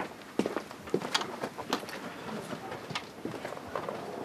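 Footsteps of a person walking across the floor, a run of short knocks about one every half second.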